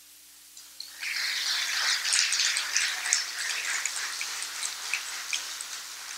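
Audience applauding, starting about a second in and slowly fading.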